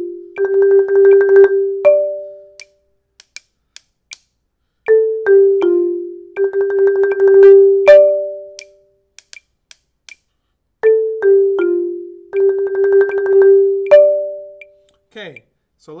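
Marimba played with yarn mallets: a short run of single notes stepping down the scale, a roll, then a slight break before one separate higher note. The phrase comes around three times, about six seconds apart, with silence between.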